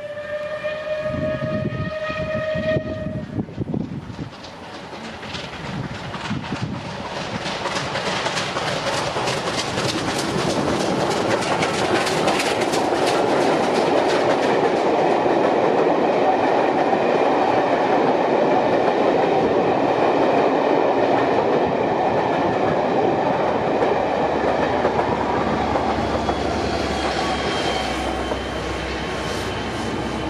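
Steam train hauled by the Bulleid Battle of Britain class light Pacific 34067 Tangmere passing at speed: a whistle sounds one steady note for about three seconds, then a rising rumble builds to a loud, steady peak with a rapid clatter of wheels over rail joints and eases slightly near the end.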